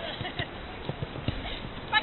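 Women footballers' high calls during play, with scattered short thuds of ball kicks and footsteps on the artificial pitch; a loud shout starts near the end.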